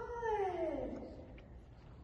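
A young Border Collie whining: one drawn-out whine that falls steadily in pitch over about a second and fades.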